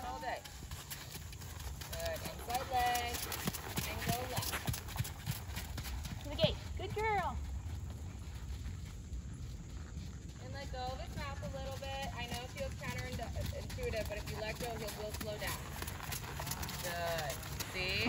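Hoofbeats of ponies moving at the walk and trot over a sand arena, with voices talking further off.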